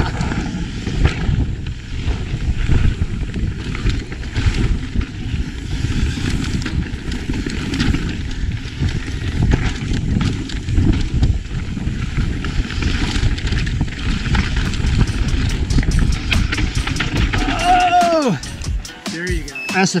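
Mountain bike descending a dry, loose dirt trail at race speed: a steady rumble of tyres over dirt and rocks, with rattling knocks from the bike and wind on the helmet microphone. Near the end it eases off, with a run of quick clicks.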